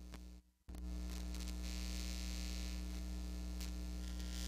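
Electrical mains hum with buzz and hiss in the audio feed. It drops out for a moment under a second in, then comes back louder and steady after a click. It is the sign of a fault in the sound system's cabling, which the crew take for a short in a cord.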